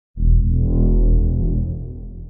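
Short electronic logo sting: a deep synth boom with a low chord above it, starting suddenly and slowly fading away.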